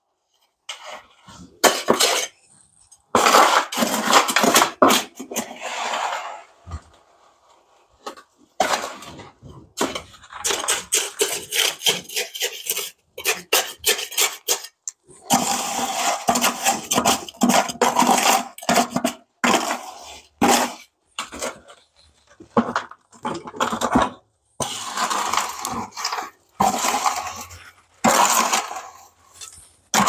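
Small hand trowel scraping stiff, gritty concrete mix out of a plastic five-gallon bucket in repeated scraping strokes, coming in bursts with short pauses between.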